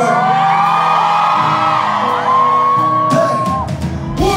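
Live band playing in a large hall while the male lead singer belts long, held notes into his microphone.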